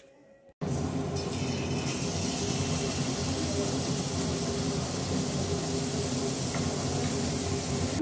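Pitha frying in hot oil in an aluminium kadai on a gas stove: a steady sizzle over a low, even hum. It starts abruptly about half a second in.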